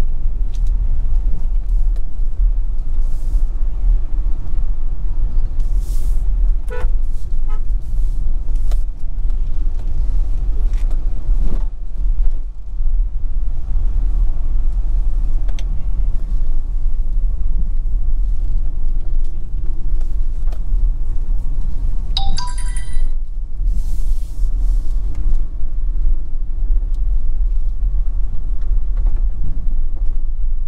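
Steady low rumble of a vehicle driving slowly along a rough, potholed road, with a brief higher-pitched tone about two-thirds of the way through.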